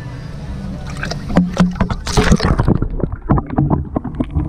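A freshly caught walleye splashing and slapping the water of an ice-fishing hole as it is released. A loud burst of splashes starts about a second in, and smaller splashes follow, tapering off toward the end.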